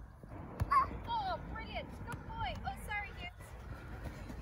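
A young child's high-pitched wordless calls and squeals, a string of short rising and falling cries over a couple of seconds, with a single thump just before them.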